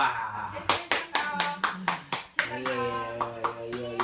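A small group clapping hands at about five claps a second, starting about a second in, with voices over it.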